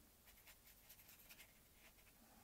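Near silence, with a few faint soft scratches of a watercolour brush stroking over wet watercolour paper.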